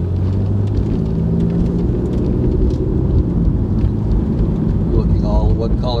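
Car engine and road noise heard from inside the cabin as the car drives on through an intersection: a steady low drone with an engine hum.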